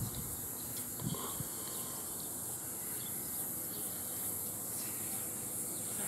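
A steady, high-pitched chorus of insects.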